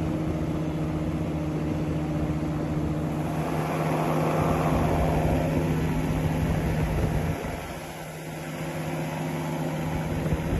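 Microlight aircraft engine and propeller running with a steady drone, with wind rushing past, heard from on board in flight. The sound swells midway and drops abruptly a little after seven seconds in.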